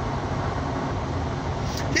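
Steady road and engine noise inside a moving vehicle's cabin, a low rumble with a hiss above it. A man's voice starts right at the end.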